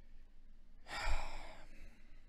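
A man's single audible sigh about a second in: a noisy out-breath close to the microphone, lasting under a second.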